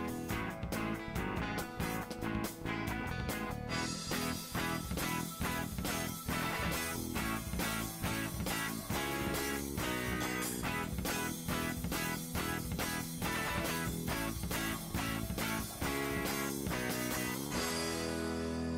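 Instrumental background music with a steady rhythm.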